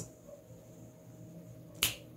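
A single sharp finger snap near the end, over quiet room tone.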